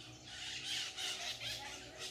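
Maritacas, small Brazilian parrots, squawking: a rapid run of harsh, high-pitched calls.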